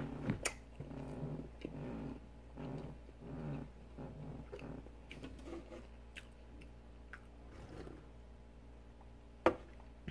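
Close-miked chewing of a soft donut: quiet, irregular mouth sounds with a few small clicks, then one sharp click near the end.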